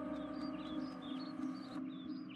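Steady, sustained tones of background music, with short high bird chirps starting just after the beginning and repeating several times a second.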